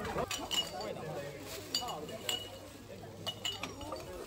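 Empty drink cans and bottles clinking against each other as collected litter is dropped into a plastic garbage bag: about half a dozen irregular, ringing clinks.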